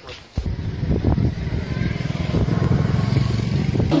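A motor vehicle engine running nearby, a fast low pulsing that starts suddenly just under half a second in and holds steady.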